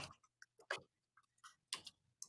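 Near silence broken by a handful of faint, sharp clicks, spaced irregularly.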